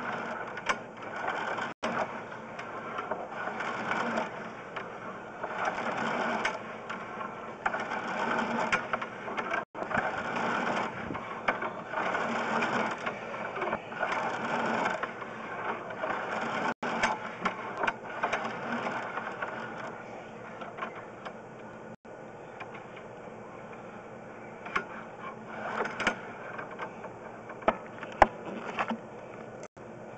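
Sewer inspection camera's push cable being fed down the line in strokes: a mechanical rattling that comes in bursts every second or two, easing off about two-thirds of the way through, with a few scattered clicks near the end.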